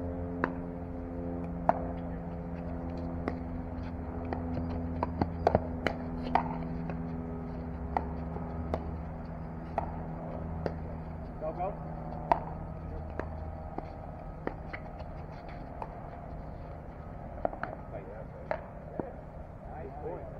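Pickleball paddles striking a hard plastic pickleball: sharp pops at irregular intervals through rallies, some loud and close, others fainter. A steady low hum and faint voices run underneath.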